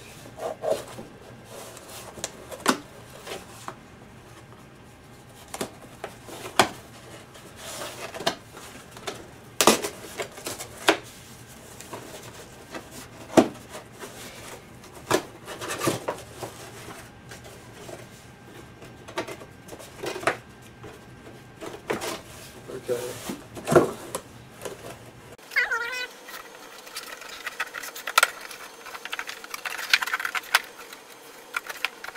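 Cardboard box being handled and worked on by hand: scattered sharp knocks, taps and scrapes of cardboard, irregular and spread throughout.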